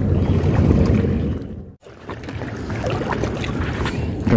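Wind buffeting the microphone, with the wash of sea water. The sound drops out for a moment a little before halfway, then carries on.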